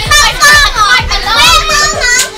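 Children's high-pitched excited shouting and squealing over playing music with a deep thumping beat about twice a second.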